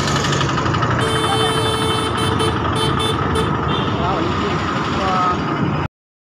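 Vehicle engine and road noise, heard while moving along a street, with a steady tone held for a couple of seconds about a second in. The sound cuts off abruptly just before the end.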